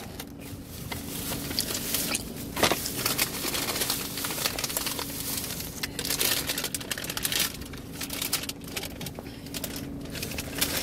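Paper takeout bag rustling and crinkling in irregular crackles as a hand digs around inside it.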